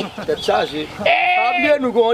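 Men's voices, then about a second in a single long, quavering, bleat-like call lasting most of a second.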